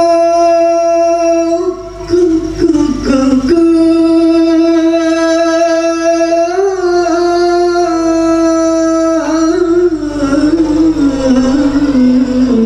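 A teenage boy sings a solo, unaccompanied Arabic mawwal into a microphone over the PA. He holds long, steady notes, then winds into an ornamented, falling line near the end.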